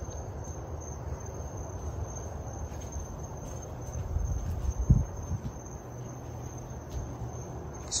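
Hunter Key Biscayne ceiling fans running on high speed, giving a steady low hum and air rush, under a steady high-pitched cricket trill. A few low thumps come about four to five seconds in.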